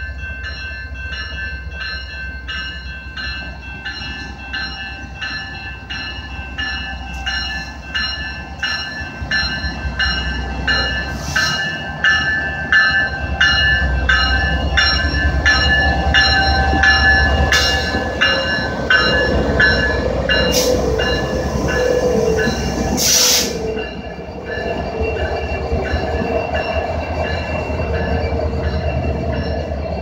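Railroad crossing bell ringing in evenly repeating strikes over the low rumble of a slow freight train's diesel locomotives, a GE AC4400CWM leading an EMD SD70ACU, pulling away from a stop. The rumble grows loudest as the locomotives pass through the middle of the stretch. Two short bursts of rushing noise come near the end.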